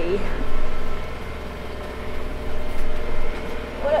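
Sailing yacht's engine running steadily under way, a low droning hum heard from inside the cabin.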